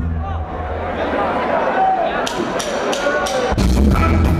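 Live ska band starting a song: the drummer counts in with about four sharp cymbal clicks a second over voices from the crowd, then the full band kicks in with bass and drums near the end.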